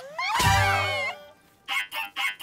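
Several cartoon female voices give a wordless cooing 'aww' together, their pitch sliding up and down. Near the end, a rapid pulsing sound effect of about four beats a second starts.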